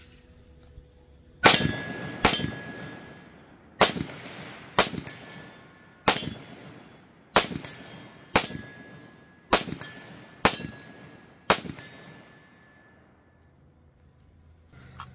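A string of about ten rifle shots from a 7.62×39 rifle, fired roughly one a second with short pauses, at steel targets. Each shot is followed by a brief ringing ping of struck steel plate.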